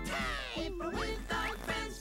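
Cheerful children's cartoon music with a cartoon duck's quacking voice over it. A falling pitch slide opens it, and short rising slides follow about a second in.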